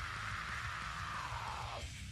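A long harsh metal scream held over a heavy metal backing track, sinking slightly in pitch and breaking off just before the end.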